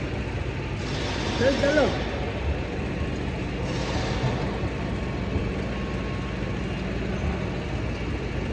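Car engine idling steadily, a low even hum, while hands handle the hood switch wiring, with short rustles about a second in and again around four seconds.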